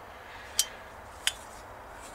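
Two short, sharp clicks about two-thirds of a second apart over a low steady background, from a small old Holley carburetor being handled and turned over in the hand.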